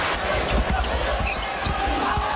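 Arena crowd noise during a college basketball game, with a basketball bouncing on the hardwood court now and then.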